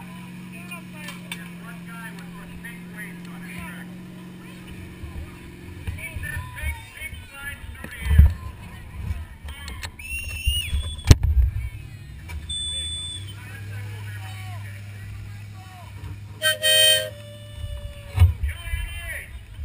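Garden pulling tractor engine idling steadily, interrupted by a stretch of bumps and two loud knocks, then idling again at a lower pitch. A short high tone sounds near the end, with people talking around it.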